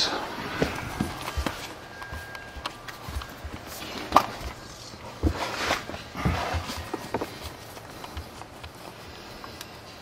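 Footsteps on a concrete floor and handling noise from a hand-held camera being moved down under the car: scattered soft thumps and knocks, with a sharp click about four seconds in.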